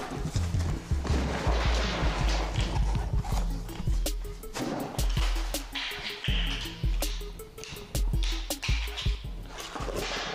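Background music with a pulsing bass line, over cardboard rustling and a run of light clicks and knocks from small boxed parts being set down on a metal workbench, most of them in the second half.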